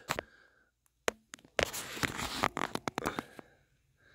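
A few faint clicks, then about two seconds of close rustling and scratching handling noise with small clicks, which stops short of the end.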